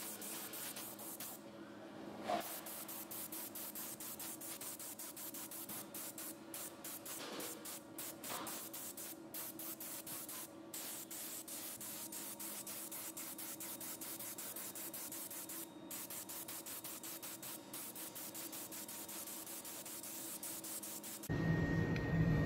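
Compressed-air cup spray gun hissing steadily as it sprays PVA release agent over a fiberglass mold. The hiss breaks off briefly about one and a half seconds in and again near ten seconds, where the trigger is let go. It stops shortly before the end.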